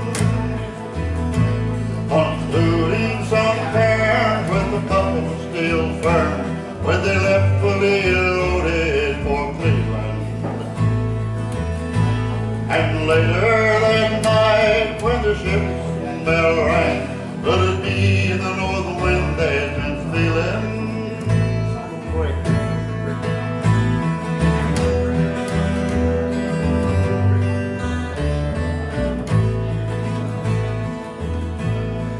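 Acoustic guitar and plucked upright bass playing a slow country-folk ballad, with a man singing over it for much of the first half.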